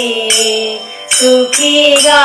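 Devotional singing: a voice holding long, wavering melody notes with metallic jingling percussion struck in time. The singing fades briefly about half a second in, then comes back strongly just after the one-second mark.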